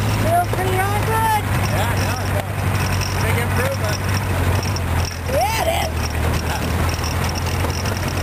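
Open rat rod roadster's engine running steadily as the car drives along, a constant low hum with wind rushing over the microphone. Two short rising-and-falling vocal calls break in, about a second in and again around five seconds in.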